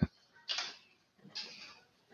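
Two soft, breathy bursts of quiet laughter about a second apart, mostly air exhaled rather than voiced.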